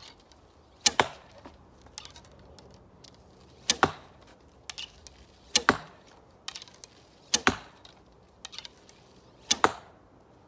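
Traditional bow shooting arrows in quick succession: five sharp string snaps about two seconds apart, each a release. Lighter clicks and rattles fall between the shots as arrows are pulled from a back-worn quiver and nocked.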